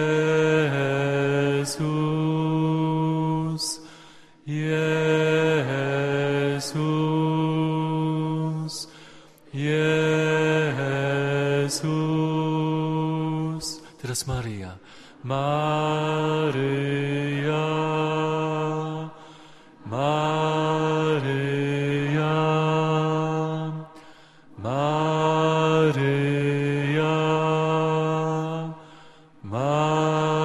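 Slow, meditative sung chant repeating a short holy-name phrase in worship. About six phrases, each holding two or three steady notes that step down, with a brief breath between phrases.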